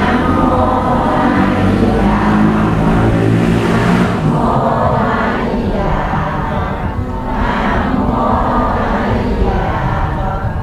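A large temple congregation chanting prayers together in unison: many voices blended in a steady recitation that rises and falls in phrases.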